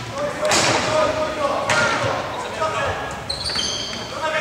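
Floorball play in an echoing sports hall: sharp clacks from stick and ball, shoes squeaking briefly on the wooden court, and players calling out.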